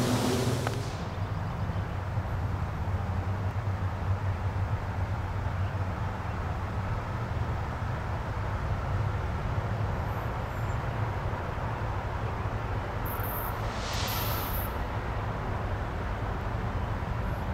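Low, steady rumble of an approaching train's EMD SD40E3 diesel locomotives, with a couple of brief high-pitched sounds near the end.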